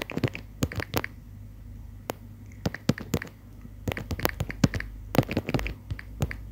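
Typing on a smartphone's on-screen keyboard: a string of irregular, quick clicking taps over a low steady hum.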